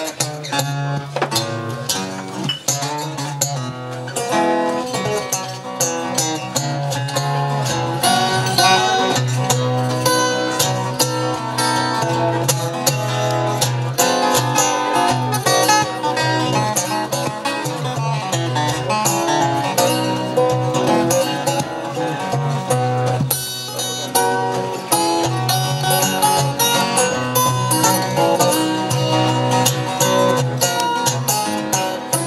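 Two acoustic guitars playing together, fingerpicked, with a steady low bass line under a busy run of picked notes.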